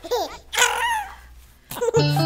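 Small children giggling in two short bursts in the first second, then a lull.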